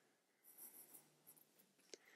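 Near silence: room tone, with a faint brief click near the end.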